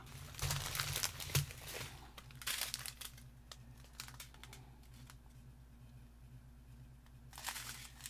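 Clear plastic bags of diamond painting drills crinkling as they are handled, in several bursts over the first three seconds and again near the end, quieter in between.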